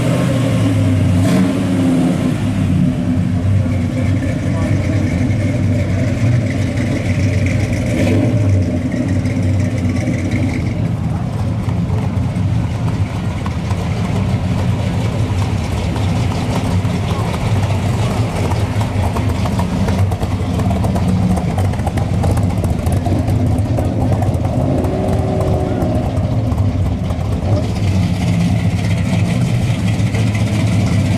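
Classic Chevrolet cars' engines rumbling at low speed as they roll past one after another: a 1967 Chevelle, then a Corvette Sting Ray, then a vintage Chevy C10 pickup. Their low, steady exhaust note runs on without a break.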